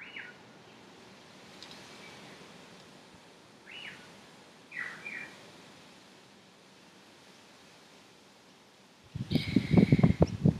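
A few short, falling bird chirps over a quiet outdoor background during the first five seconds. About nine seconds in, a loud rustling, bumping noise takes over, the sound of the camera or microphone being handled close up.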